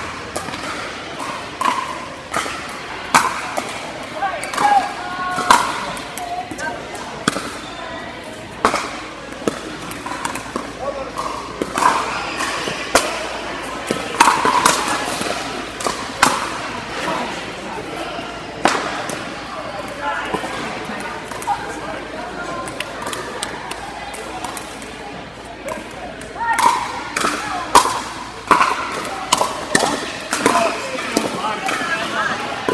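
Pickleball paddles striking a plastic ball in a rally: sharp pops at irregular intervals, over a background of chatter in a large indoor hall.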